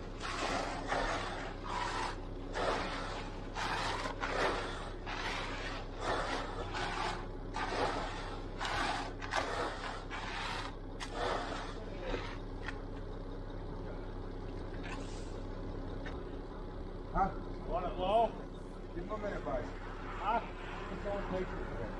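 Repeated scraping strokes of a screed board and rake being dragged through wet concrete, roughly one or two a second, stopping about twelve seconds in. A steady engine hum runs underneath, and voices come in near the end.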